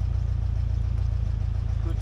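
Wind buffeting the microphone, a loud, steady low rumble, with a man's voice briefly saying "good" at the very end.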